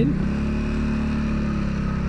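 Motorcycle engine running with a steady note as the bike pulls away from a stop.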